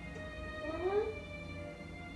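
Horror film score of held, eerie tones, with one short rising cry, the loudest sound, about a second in.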